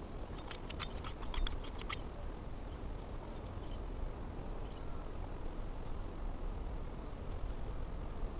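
Steady low outdoor rumble, with a quick run of a dozen or so sharp clicks in the first two seconds and a few faint, short, high chirps.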